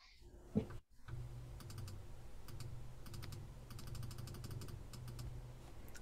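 Faint typing on a computer keyboard: bursts of quick light key clicks over a low steady hum.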